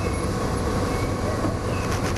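Steady low rumbling background noise under an even hiss, with no sudden events.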